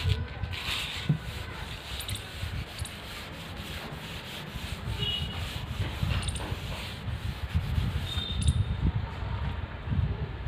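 A chalkboard being wiped clean: continuous rubbing strokes across the board surface, growing louder in the last few seconds.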